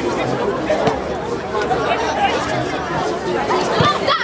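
Indistinct shouting and chatter of players and onlookers at an amateur football match, several voices overlapping, with a single thump near the end.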